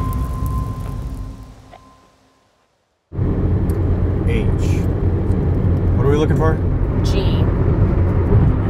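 Intro music fading out over the first two seconds, a short silence, then a sudden cut to the steady low rumble of road and engine noise inside a car's cabin at highway speed.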